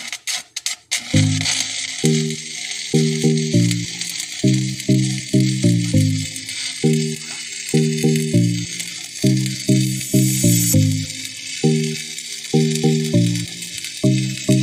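Stick welding arc: a few sharp crackles in the first second, then a steady crackling sizzle. Background music with a rhythmic line of low notes plays over it.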